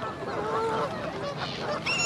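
Flock of black-headed gulls calling, with many overlapping calls and a louder, higher call near the end.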